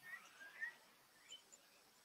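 Near silence: room tone, with a few faint brief sounds in the first second or so.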